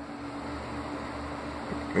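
Steady hum of a running fan, with a faint constant tone over a soft hiss.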